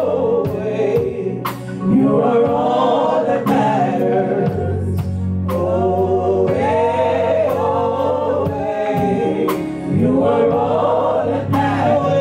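Gospel song sung in harmony by a small group of women's voices through microphones, over a steady beat of sharp percussive strikes.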